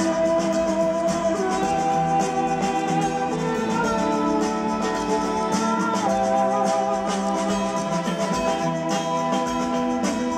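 Live rock band playing: electric guitars with held, gliding notes over a steady, quick percussion pattern, heard from within the audience.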